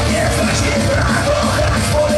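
Live punk rock band playing loudly, with electric guitar and a shouted lead vocal over the full band.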